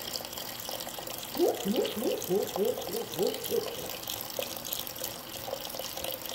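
Chicken broth poured in a steady stream into a pot of diced vegetables, splashing into the liquid. In the middle, a quick run of rising glugs from the pouring container, about three a second.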